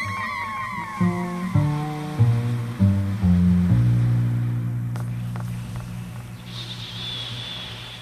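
Live electro-jazz trumpet and bass with electronic effects at the end of a piece. A bass line steps through several low notes and settles on one long held note that slowly fades out. Early on, high tones slide downward in pitch over it.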